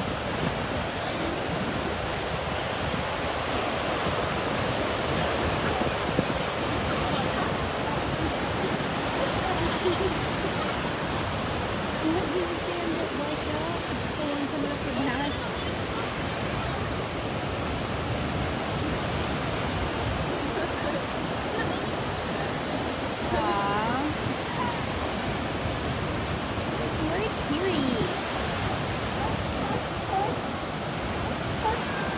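Ocean surf breaking on a sandy beach: a continuous, even rushing wash of waves. A few brief pitched calls sound faintly over it, the clearest a little past two-thirds of the way through.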